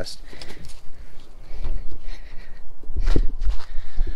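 Footsteps on gravel as someone walks with the camera, with irregular low rumbling thumps on the microphone that grow stronger in the second half.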